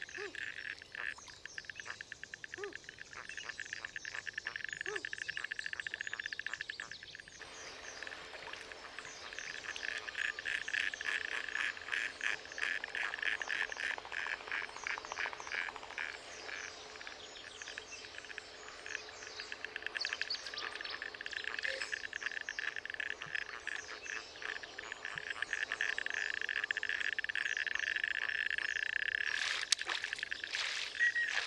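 A steady animal chorus of rapidly pulsed, trilling calls, with scattered higher chirps. The chorus changes about seven seconds in and swells louder near the end.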